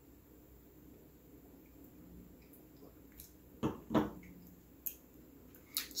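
A wine taster's mouth sounds during a tasting: quiet room tone, then two short soft sounds about three and a half seconds in, one right after the other, and a faint click about a second later.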